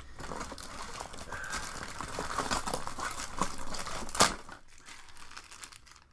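Plastic packaging crinkling and rustling as the box is rummaged through, with one sharp click about four seconds in; then it goes quieter.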